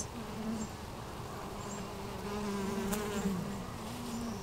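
Honeybee colony humming in an open hive: a steady low drone of many bees' wingbeats that wavers slightly in pitch.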